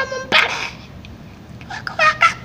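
A man laughing in short, high-pitched bursts, with a loud breathy burst about half a second in.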